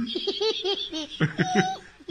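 A young child laughing in a quick run of short bursts, followed by a longer laugh about a second in.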